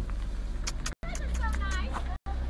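Steady low rumble of an idling car, heard from beside or inside it, with a few light clicks and a brief high-pitched voice in the second half. The sound drops out for an instant near one second.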